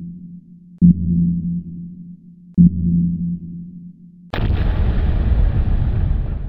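Electronic logo sound effects: low pulses, each starting suddenly and fading, about every second and three-quarters, then a loud burst of noise about four seconds in that carries on.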